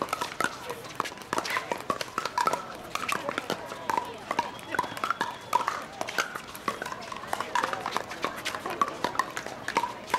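Pickleball paddles striking a plastic ball over and over in sharp, irregular pops, with hits from neighbouring courts overlapping. Voices chatter underneath.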